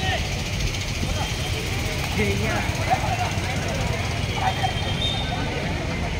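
Voices of players and onlookers calling out across an outdoor court, over a steady low rumble.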